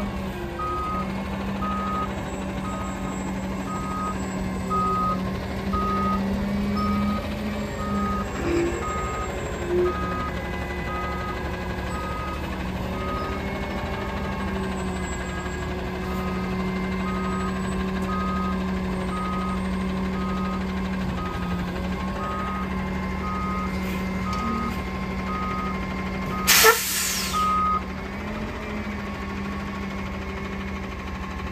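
Autocar roll-off truck's reversing alarm beeping about once every 0.8 seconds over its natural-gas engine running steadily. Near the end a loud, short burst of air hiss, typical of the air brakes, comes just before the beeping stops.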